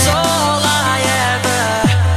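Electronic dance music from a rave DJ set: a high melody line that bends in pitch over a long held bass note, the bass sliding down in pitch near the end.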